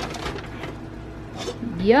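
Pot of water with crab legs heating on a kitchen stove, a faint steady hiss of simmering water.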